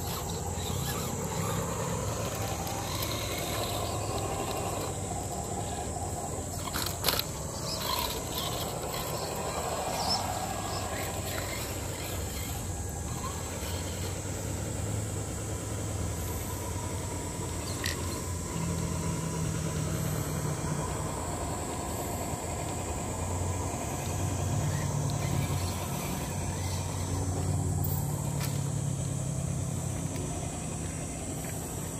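Radio-controlled scale rock crawlers' electric motors and geared drivetrains whining and changing pitch as they crawl up a granite slab, with a few sharp clicks and knocks of tyres and chassis on the rock. A steady high-pitched drone runs underneath.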